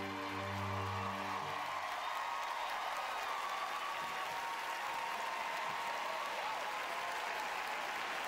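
Studio audience applauding throughout, under the last held chord of the rumba music, which ends about a second and a half in.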